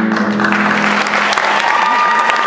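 Audience applauding, a dense clatter of clapping, as the song's last held note dies away about a second in.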